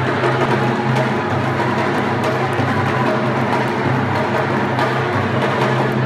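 Music carried by drums and other percussion, playing steadily with a loud, regular beat.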